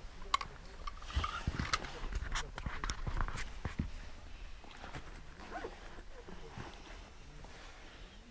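Footsteps and scuffs on a dirt floor with scattered clicks and knocks as someone steps into a small hut, busiest in the first half and quieter after about four seconds.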